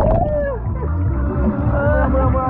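Muffled underwater sound of river water heard by a camera held beneath the surface: a heavy low rumble of moving water, with muffled gliding voices coming through it.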